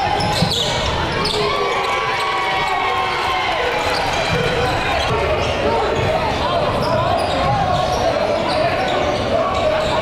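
Live basketball game audio in a gym: voices calling out over a steady hubbub, with a basketball bouncing on the hardwood floor now and then.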